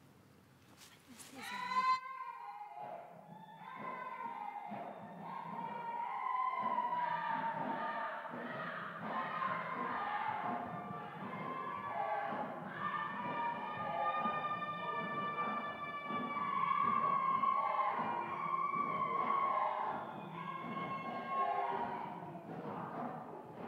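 A group of performers singing and chanting together, many voices at once, starting about two seconds in after a short near-silent pause.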